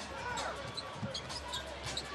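Basketball being dribbled on a hardwood court, a few separate bounces, over the steady murmur and rumble of an arena crowd.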